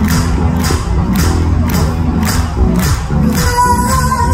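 A rock band playing live through a concert PA, with a steady drum beat about twice a second, and a crowd cheering and shouting over the music.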